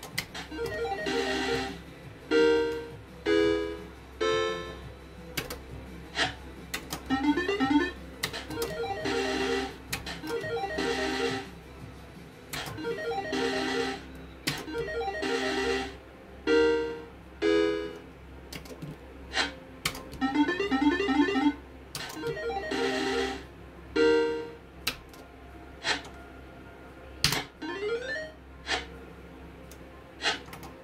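Electronic sound effects from a video slot machine: short synthesized jingles recurring every second or two, with sharp clicks between them and a rising tone near the end.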